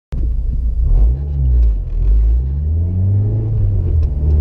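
Honda Civic Si's four-cylinder engine heard from inside the cabin while driving. Its note rises and falls briefly about a second in, then climbs gently and holds steady.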